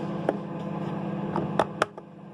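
A household electrical appliance humming steadily, with a few sharp clicks in the second half; the hum cuts off right at the end.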